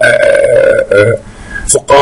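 A man's voice: a drawn-out hesitation vowel held for almost a second, then a few short spoken syllables.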